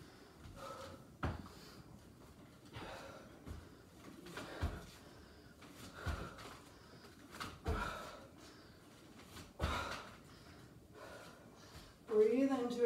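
A woman breathing hard through a set of lunges and lunge jumps, with a dull thud from her feet landing on the exercise mat every second or two.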